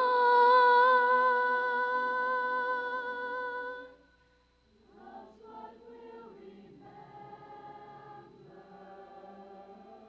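Large mixed choir of young voices singing: a loud held chord fades out about four seconds in, and after a brief pause the choir comes back in softly.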